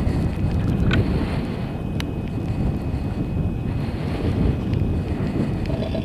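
Wind buffeting the microphone on a moving chairlift, a steady low rushing noise. There are two sharp clicks, one about a second in and one about two seconds in.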